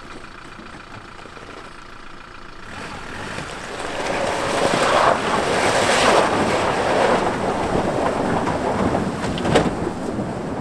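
Kia Bongo 3 4x4 truck driving into a shallow river: water splashing and churning around its wheels, swelling loud from about four seconds in as the truck wades through, with its engine running underneath. A single sharp knock near the end.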